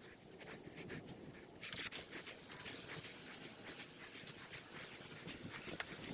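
A dog panting quietly and quickly, close by.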